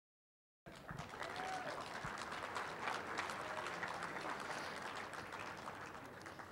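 Audience applauding in a large hall. It cuts in suddenly just over half a second in, holds steady, and thins out near the end.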